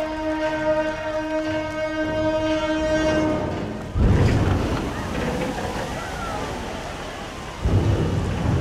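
A horn sounds one long steady note for about three seconds. Then the side-launched ship NOAA R 228 (Reuben Lasker) drops off its launching ways into the water with a sudden loud rush and splash, followed by churning water. A second surge of wave comes near the end.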